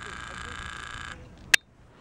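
A steady high mechanical whine made of several tones cuts off abruptly about halfway through. A single sharp click follows.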